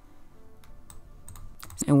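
A few sparse, soft clicks at a computer over a quiet background; a voice starts near the end.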